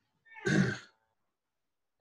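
A man coughs once, briefly.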